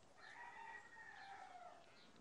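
A faint rooster crow in the farm background: one long call that droops in pitch near its end.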